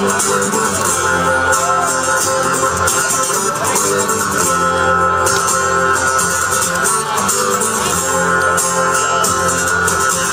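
Live music led by an acoustic guitar: an instrumental passage with no singing, dense sustained tones held at a steady loudness.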